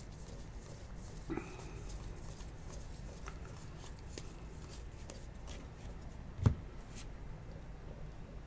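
Bowman baseball cards being flipped through by hand, with faint ticks and rustles as each card slides off the stack. A single dull thump comes about six and a half seconds in.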